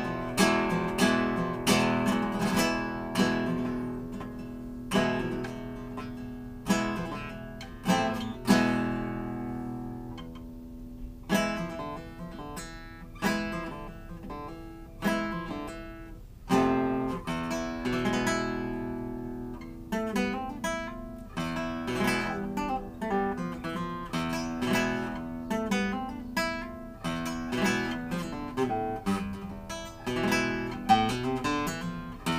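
Solo playing on a 1913 Antonio de Lorca classical guitar with a tornavoz, freshly strung. Chords and plucked single notes ring and decay, with a short lull about ten seconds in.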